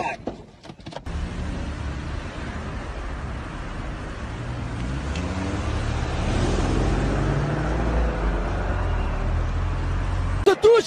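Steady engine and road noise heard from inside a moving car, starting about a second in and growing a little louder later on.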